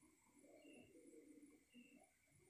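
Near silence with faint bird calls: low cooing notes and a short high chirp repeating about once a second.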